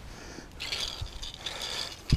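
Rustling and scraping from hands and clothing moving close to the microphone as a fish is handled on a muddy, grassy bank, growing stronger about half a second in.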